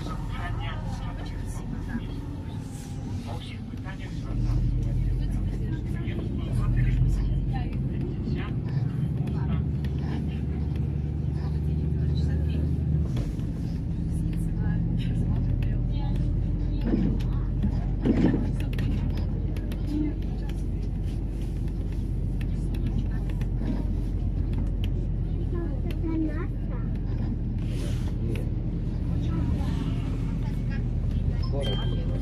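Inside a MAZ-203 city bus under way: a low, steady engine and road drone. It grows louder about four seconds in and changes pitch around thirteen seconds, with faint passenger voices and rattles over it.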